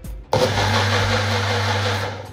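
Compact personal bullet-style blender running at full speed, blending milk with thandai masala while the cup is held pressed down on the base. The motor starts abruptly about a third of a second in, runs as a steady loud whir, and winds down at the very end.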